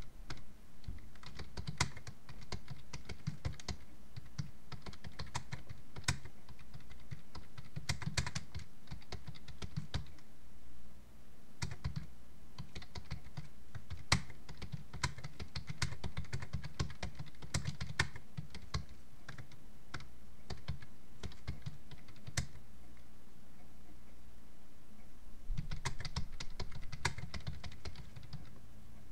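Typing on a computer keyboard: irregular key clicks in runs, with short pauses between them.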